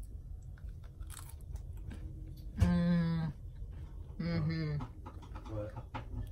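A crunchy bite into a crisp homemade sourdough herb cracker about a second in, then crisp crunching as it is chewed. Two hummed "mmm"s of approval, the loudest sounds, come in the middle.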